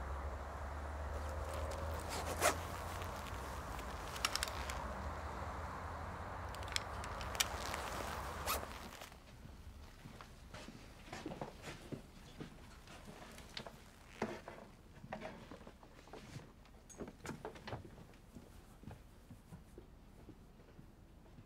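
A steady low hum with a few sharp clicks. About eight seconds in it drops away, leaving quiet, scattered rustles and small clicks, like something being handled or unzipped in a quiet room.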